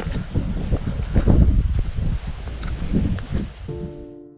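Wind buffeting the microphone in a low, uneven rumble, with footsteps on grass; piano music comes in near the end.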